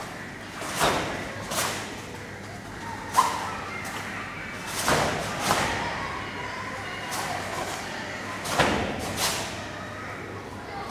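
Karate gi snapping sharply with quick punches, mostly in pairs: two strikes about a second in, two about five seconds in and two near the end, with a single sharper crack about three seconds in.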